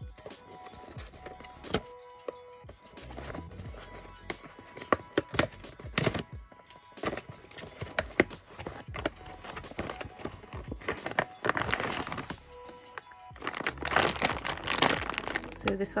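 Cardboard blind box being opened by hand: the folded top flaps scrape and snap as they are pulled apart. Near the end, a plastic blind bag crinkles as it is handled. Background music plays throughout.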